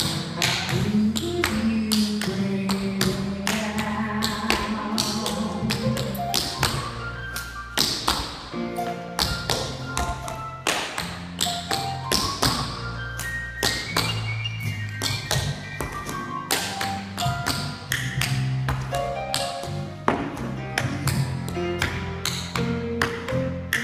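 Tap shoes striking a hardwood floor in quick, uneven tap-dance steps, several taps a second, over recorded music with a bass line.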